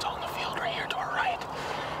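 A man whispering.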